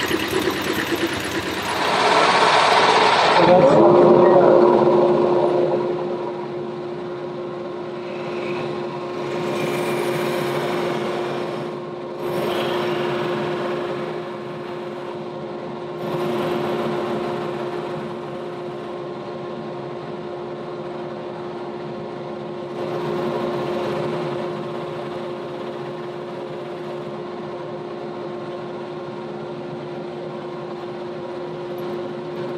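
An industrial sewing machine stitches for the first few seconds. Then an electric motor spins up with a rising whine and runs at a steady pitch, driving a round wheel over a carpet floor mat. Several louder swells come as the wheel works the mat.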